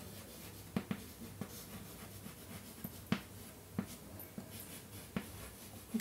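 Chalk writing on a blackboard: quiet scratching of the chalk with a string of short, sharp taps as strokes begin, over a faint steady hum.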